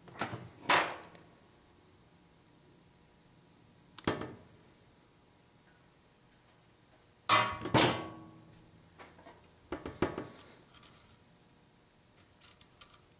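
Scattered clicks and knocks from a metal recoil starter shroud and pliers being handled while the pull cord is threaded, with quiet stretches between. A louder pair of knocks comes about two-thirds of the way through.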